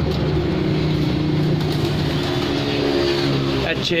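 An engine running with a steady drone, its pitch shifting slightly a couple of times.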